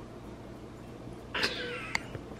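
Low room tone, then about a second and a half in a toddler gives a short high-pitched squeal that falls slightly in pitch, followed by a brief click.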